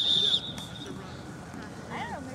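A referee's pea whistle blowing a steady, warbling high note that cuts off about half a second in, whistling the play dead. Faint voices of players follow.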